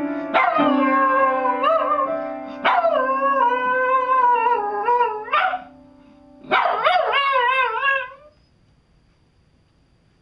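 A dog howling in three long, wavering howls, over a steady held musical note; the howling stops about eight seconds in.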